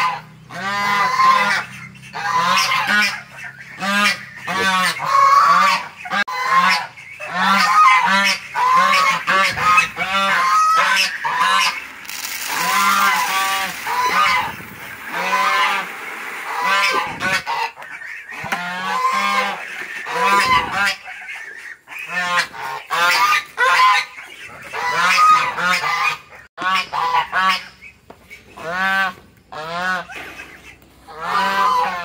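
A flock of domestic geese honking loudly and continuously, call after call overlapping. Partway through, feed pellets rattle as they are poured from a bucket into a feeder.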